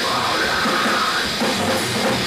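Hardcore metal band playing: drum kit and electric guitars, loud and continuous.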